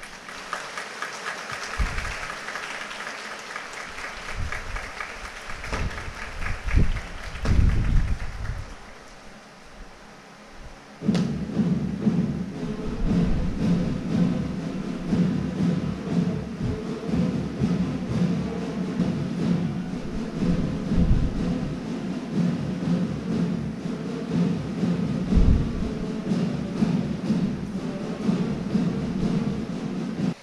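Applause with a few low thumps. About eleven seconds in, louder march music with percussion starts and plays on.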